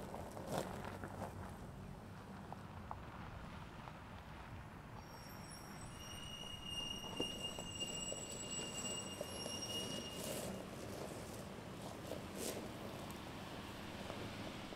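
Quiet low-speed driving of a Lexus RX 450h+ plug-in hybrid SUV: faint tyre crunching over gravel and grass, with scattered small clicks. About five seconds in, thin high steady tones start and last for several seconds.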